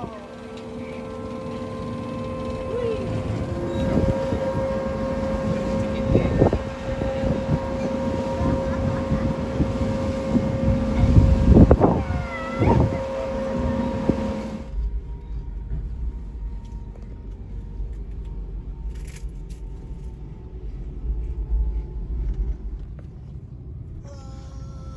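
Car ferry's engines droning with steady hum tones, over a rush of wind and water. About fifteen seconds in the sound changes abruptly to a deeper low rumble with a few clicks.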